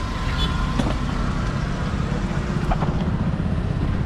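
Steady low rumble of road traffic and vehicle engines running.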